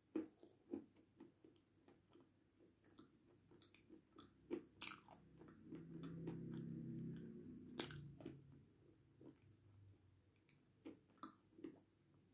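Faint close-up biting and chewing of a dry block of edible clay, with crisp crunches scattered through. The sharpest come just after the start and about two-thirds in, with a small run of them near the end. A low hum lasts a couple of seconds in the middle.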